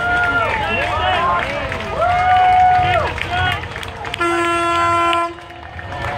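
Spectators cheering and calling out. About four seconds in, a vehicle air horn sounds one steady, multi-tone blast of about a second, then cuts off sharply.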